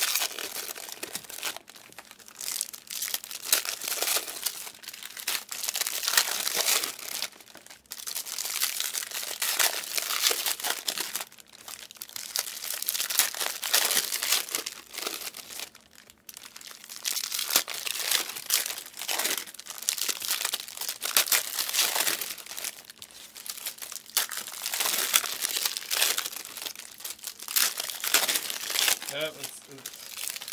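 Panini Select trading-card pack wrappers crinkling and tearing in near-continuous handling as packs are opened, with a few short pauses.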